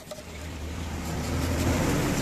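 A motor vehicle engine rumbling and growing steadily louder as it draws near.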